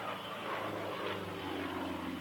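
Yakovlev Yak-55's nine-cylinder radial engine and propeller running at high power as the aerobatic plane pulls up into a vertical climb, a steady drone that grows a little louder about half a second in.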